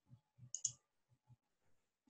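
A computer mouse button clicked, a quick pair of sharp ticks about half a second in, over faint room tone.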